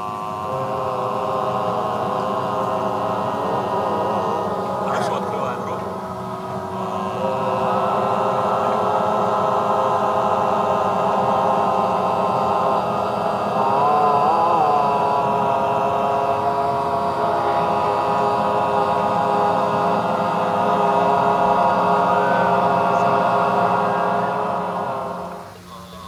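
A group of voices holding a long sustained drone in overtone singing, with whistling overtones ringing above the low fundamental. The drone dips briefly about a quarter of the way in and wavers in pitch near the middle. It stops shortly before the end.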